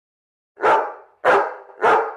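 A dog barking three times, about half a second apart.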